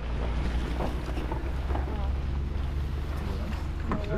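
Wind noise on the camera microphone: a steady low rumble, with faint, scattered voices underneath.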